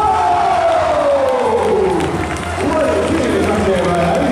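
A gymnasium crowd cheering and shouting, with one loud drawn-out voice sliding down in pitch over the first couple of seconds.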